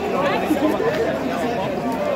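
Many people talking at once: crowd chatter, with several voices overlapping.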